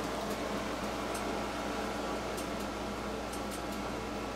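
Steady mechanical hum and room noise, with a few faint, soft ticks over it.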